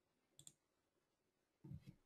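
Faint computer mouse clicks: two quick clicks about half a second in, then a duller knock near the end.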